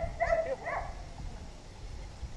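Standard poodle giving a few short, high-pitched whines in the first second.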